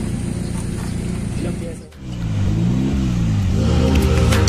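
Turbocharged Toyota 4E-FTE four-cylinder of an AE92 Corolla race car, idling steadily with the hood open. About two seconds in, the sound cuts to the engine heard from inside the stripped cabin, revving up and down repeatedly while the car is driven.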